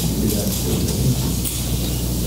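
Steady, loud hiss over a low hum, with faint, indistinct voices beneath it.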